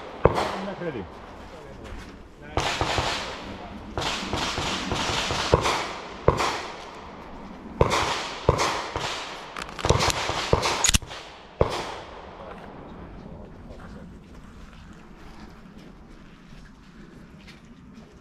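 Handgun shots at a pistol match, about a dozen sharp reports fired irregularly over roughly twelve seconds, several with a long echoing tail, then only low background.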